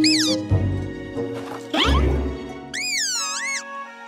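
Background music with high, squeaky cartoon character vocalizations that slide up and down in pitch: a short one at the start, another near the middle, and a longer wavering one in the second half.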